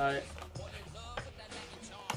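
Cartoon clip soundtrack: background music with faint character voices.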